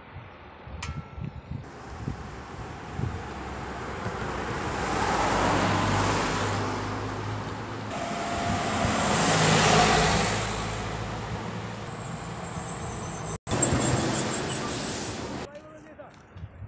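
Road vehicles passing on a road: engine and tyre noise that swells to one peak about five to six seconds in and another about ten seconds in, with a brief dropout near the end.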